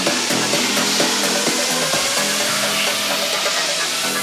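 Electronic dance music from a DJ set in a build-up with the kick drum and bass cut out: a slowly rising synth sweep over light, fast hi-hat ticks.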